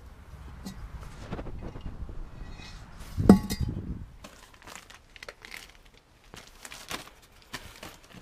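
Rummaging through discarded items: rustling and handling noises, with one loud knock that rings briefly a little over three seconds in, then scattered light clicks and rustles.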